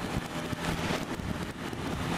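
Suzuki Bandit's inline-four engine running at a steady speed while riding, with wind buffeting the microphone.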